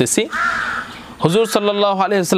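A man's speaking voice with a short pause near the start, in which a single bird call of about half a second is heard outdoors.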